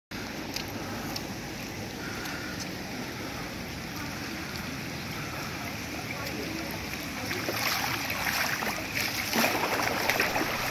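Steady rush of heavy rain and floodwater running over paving, growing louder in the last few seconds.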